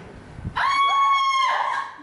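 A high-pitched human scream, one steady held note lasting about a second before it dies away.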